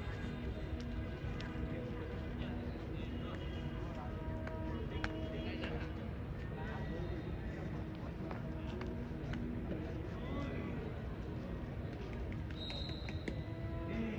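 Distant voices and background music over open-air ambience, with occasional sharp knocks.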